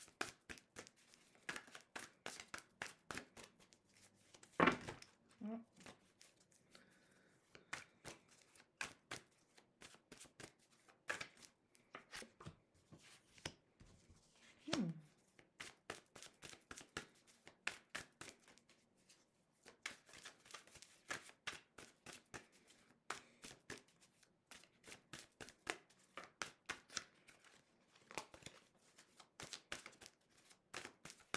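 An old, worn Morgan-Greer tarot deck being shuffled by hand: a rapid, irregular patter of card edges flicking and slapping together. There is a louder single sound about four and a half seconds in.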